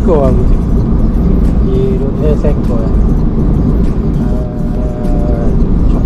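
Steady low road and engine rumble heard inside the cabin of a moving Honda car.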